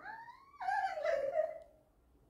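Indian mixed-breed dog whining: a short rising whine, then a louder, longer whine that falls in pitch.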